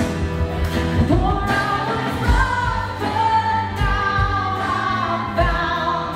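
A live worship song: women's voices singing a melody together over a band with a steady drum beat.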